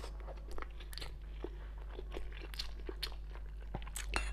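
Close-miked chewing of a soft steamed stuffed bun: a string of short, irregular wet mouth clicks and smacks.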